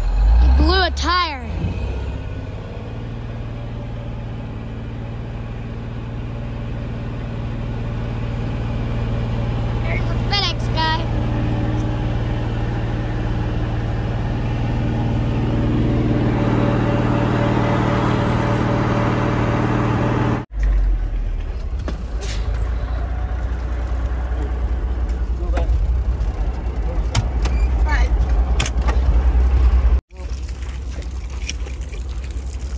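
Old water truck's engine running while driving, heard from inside its cab, its pitch steady and the level slowly rising; a few brief wavering squeals cut across it near the start and about ten seconds in. After about twenty seconds the sound changes to a low rumble with scattered knocks and rattles.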